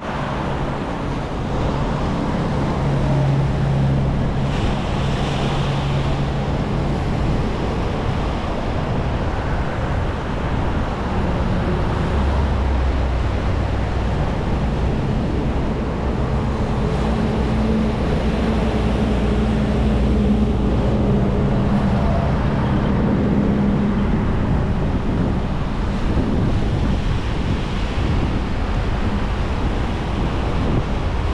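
Small waves breaking and washing up a sand-and-stone shore in a steady, continuous surf, with wind on the microphone.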